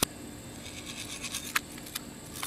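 BB gun firing: two sharp clicks, a strong one at the very start and a weaker one about a second and a half in, with faint scattered crackle between them.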